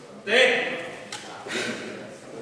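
A man shouting loudly once, then a second, quieter call about a second later, over faint background voices.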